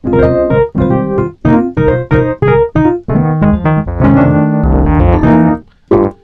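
Sampled Wurlitzer 200A electric piano (Neo-Soul Keys 3X Wurli) with its dirt (overdrive) turned all the way up, playing short staccato comping chords at about two to three a second, then longer held chords over a bass note.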